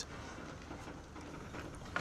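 Faint steady background noise with a low hum. There is no distinct event.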